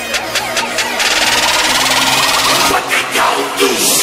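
Electronic intro-music riser: fast even ticks, about five a second, give way about a second in to a dense hissing build that grows steadily louder, with sweeping glides near the end.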